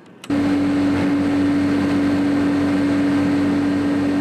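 Sludge-dewatering decanter centrifuges at a wastewater treatment plant running: a loud, steady machine hum with one constant tone, starting abruptly a moment in.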